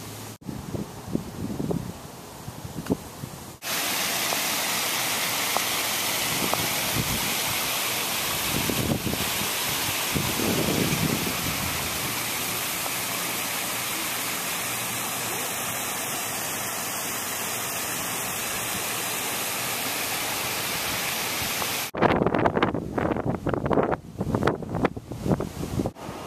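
A loud, steady rushing hiss that cuts in suddenly about four seconds in and cuts off just as suddenly near the end.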